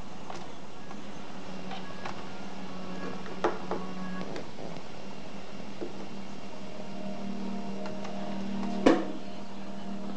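Music from an MP3 player playing quietly through an opened boombox's speaker, fed in through the old tape-head input. Two sharp clicks, about three and a half seconds and nine seconds in, stand out over it.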